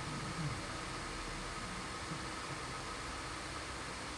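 Steady, even hiss of hall background noise, with no voice in it.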